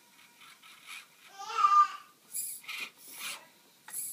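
Short bursts of scraping and rubbing as the micro crawler's tyres work over the hard plastic bodies of the RC cars beneath it. About one and a half seconds in comes the loudest sound, a brief high-pitched wavering cry.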